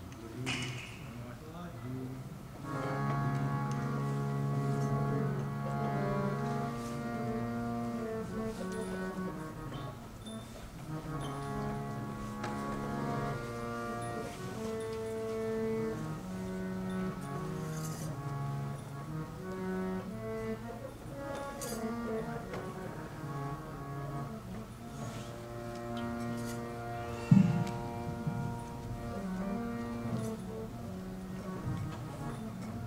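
Harmonium playing a slow melody over held chords, starting about two and a half seconds in. A single sharp knock sounds near the end.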